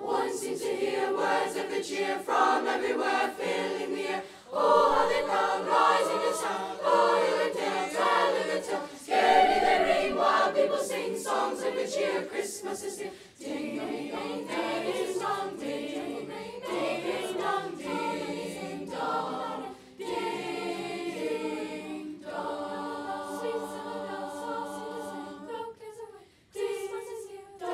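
Children's school choir singing a cappella in several voices, phrase by phrase with short breaks, holding steady chords near the end.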